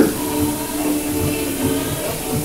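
Live band music carrying over from a neighbouring stage: held notes with a low, irregular drum beat under them.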